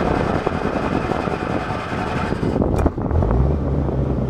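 Kohler 10 kW generator's water-cooled Ford four-cylinder engine cold-started: the starter cranks it for nearly three seconds, then it catches and runs steadily at a low pitch.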